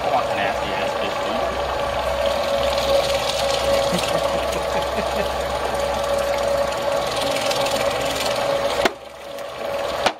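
Electric meat grinder's motor running at a steady hum as it grinds fish chum, then cutting off abruptly about nine seconds in.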